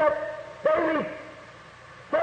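A man's voice preaching in two short phrases, the second about half a second in, followed by a pause with only steady background hiss.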